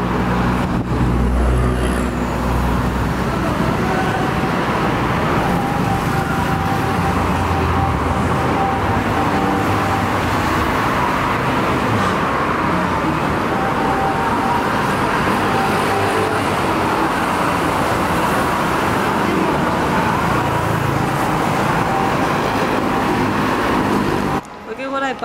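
Steady road traffic noise from cars and motorbikes on a busy city street, a continuous rumble without a break.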